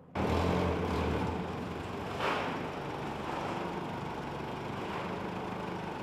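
A fishing boat's engine running steadily under way, a low hum with rushing noise over it. It starts suddenly just after the beginning, and the noise swells briefly about two seconds in.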